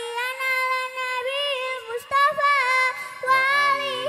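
A young girl singing a sholawat into a microphone, with long held notes ornamented with quick wavering turns. A lower voice joins in near the end.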